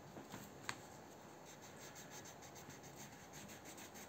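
Crayon rubbing on drawing paper in quick, short, faint strokes, about five a second, after a single sharp click about a second in.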